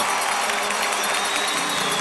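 Arena crowd cheering and applauding steadily, the home fans' response to a goal just scored.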